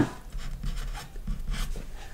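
Marker pen writing a short word, a series of brief scratchy strokes.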